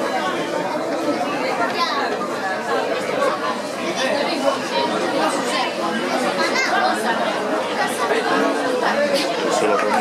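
Spectators chatting, several voices overlapping.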